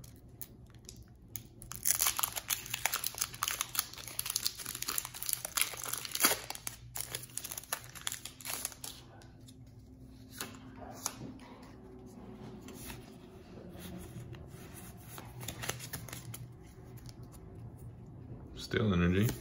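Foil booster-pack wrapper being torn open and crinkled, a dense crackling rustle for the first several seconds. It is followed by fainter, scattered rustles.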